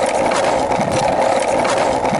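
Skateboard wheels rolling over street asphalt, a steady, even rolling noise.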